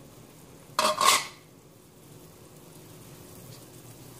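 Broth bubbling at a steady boil in a stainless steel pot, with one brief loud clatter about a second in.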